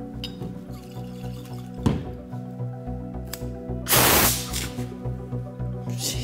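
Rubbing-alcohol vapour in a glass jar puffing out through the small hole in the lid with a short hiss about four seconds in: a spurt of air that doesn't properly ignite. A sharp click comes about two seconds in, over steady background music.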